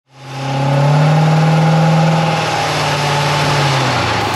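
A car engine held at raised revs with a steady note. It fades in over the first half second and settles slightly lower near the end.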